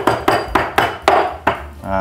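Kitchen knife striking lemongrass stalks on a wooden cutting board in quick repeated knocks, about five a second, bruising the stalks. The knocks stop about one and a half seconds in.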